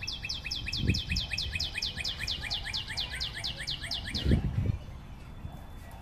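A bird singing a long, fast trill of repeated downslurred high notes, about eight a second, that stops almost five seconds in. Two dull low thumps come about a second in and again just after four seconds.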